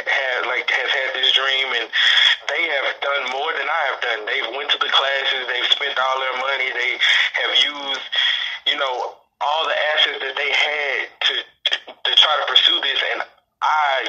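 Speech only: a man talking steadily, with a few short pauses in the last few seconds.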